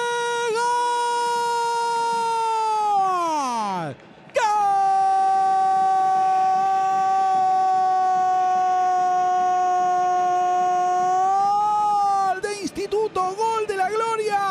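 Football commentator's drawn-out goal call for a goal just scored. A long held shout slides down in pitch and breaks off about four seconds in. After a short breath comes a second, lower held note of about eight seconds, which then breaks into quicker shouted words near the end.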